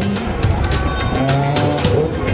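A man's voice amplified through a loudspeaker, intoning long, drawn-out syllables in a low chant.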